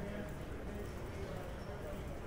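Footsteps tapping on a hard polished floor, over a steady low background hum and the faint voices of people in a large station hall.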